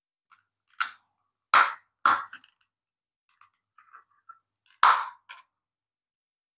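Hard plastic clicking and knocking as the two halves of a solar flip-flap flower's pot shell are handled and pressed together around its mechanism: a few short, sharp snaps, the loudest about one and a half, two and five seconds in, with lighter ticks between.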